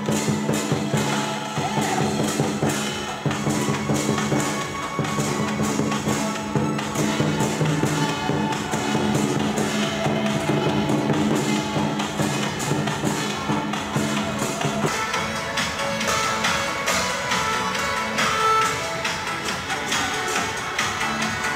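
Vietnamese lion dance percussion: drum, cymbals and gong beaten in a fast, dense rhythm. A steady low tone runs under it until about three-quarters of the way through, when the sound changes.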